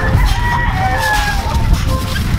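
Several gamefowl roosters crowing at once, their drawn-out crows overlapping at different pitches.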